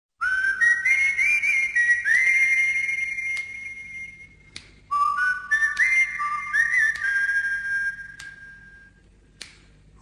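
Song intro: a high, whistle-like melody in two rising phrases, its notes stepping upward and lingering over one another. Each phrase fades away and ends with a faint click.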